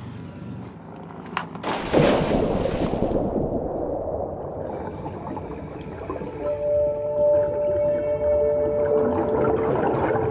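A loud splash about two seconds in as a scuba diver goes into the sea, followed by a continuous muffled wash of water. From about the middle on, two long held tones of background music sound over it.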